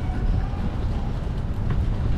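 Gusty wind buffeting the camera microphone: a constant, uneven low rumble.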